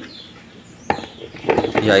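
A single sharp knock about a second in, from a plastic dish of cut pumpkin and potato knocking against a cooking pot as the vegetables are brought to it.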